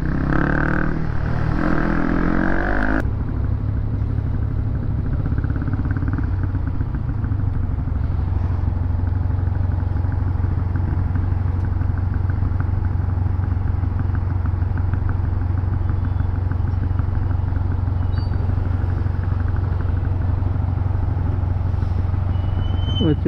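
Motorcycle riding in slow city traffic, heard from the rider's helmet camera: a steady low engine drone from the Honda CB150R's single-cylinder engine, with wind and road noise over it. The sound changes abruptly about three seconds in, from a busier, shifting mix to the steady drone.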